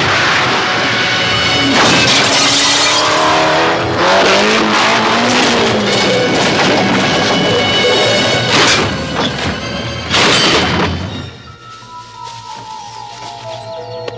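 Film car-crash sound: a car tumbling, with metal crashing, glass shattering and several sharp impacts, under a music score. The crash noise stops about eleven seconds in, leaving quieter music with a slowly falling line of notes.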